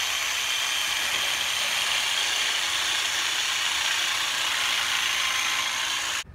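Jigsaw running steadily as it cuts a notch into a pine one-by-two board.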